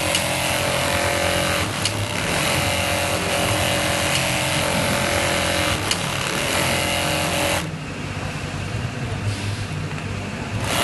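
Leather-working bench machine running: a steady low motor hum under a louder whirring hiss with a steady mid-pitched tone. The whir breaks off briefly about two seconds in and cuts out near the end, leaving only the hum.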